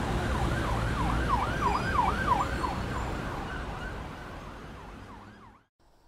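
A siren in a fast up-and-down yelp, about three sweeps a second, over a low steady rumble of traffic. It is loudest about two seconds in, then fades away and cuts off just before the end.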